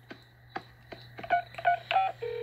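Cell phone keypad beeps as a number is dialled: a few faint taps, then three short beeps in the second half, played through a TV speaker.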